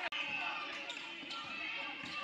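A basketball being dribbled on a hardwood gym floor during live play, a few separate bounces, over the voices of players and spectators in the gym. The sound cuts out briefly just after the start.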